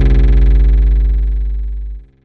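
Final held bass note of a Brazilian funk (funk carioca) track: a deep, loud sustained tone with many overtones, slowly fading and then cutting off at the end.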